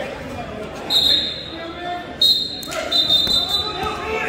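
Referee's whistle blowing three short, shrill blasts to start wrestling from the referee's position, the last two close together. Crowd chatter echoes in the gym underneath.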